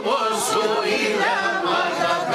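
A group of voices singing together without instruments, a Pontian Greek folk song sung by people around a table.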